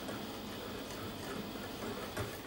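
Faint ticking of a small wire whisk stirring a thin liquid in a bowl.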